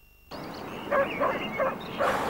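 A dog giving a few short barks over a steady background hiss, starting after a brief silence at the cut.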